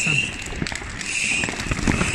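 Fireworks and firecrackers going off all around, a dense, continuous scatter of sharp bangs and crackles.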